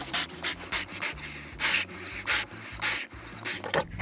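A person breathing in and out of a balloon: a quick, irregular series of short airy breath hisses, some a little longer than others.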